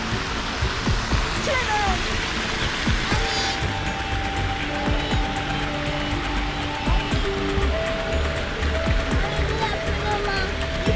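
Fountain jets splashing steadily into a pool, with music of held notes coming in about three and a half seconds in.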